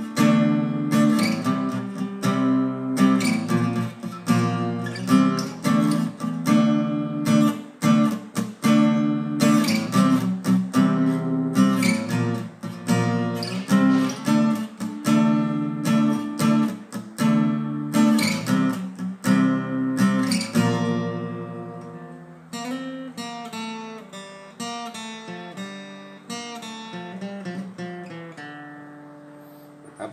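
Acoustic guitar strummed through a Dm–C–Bb chord progression in steady repeated strokes. About two-thirds of the way through it drops to quieter, sparser single notes that ring and fade.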